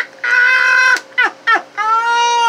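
A man's high-pitched laughter in long held cries: one held note, a couple of short gasps, then a second long held note starting near the end.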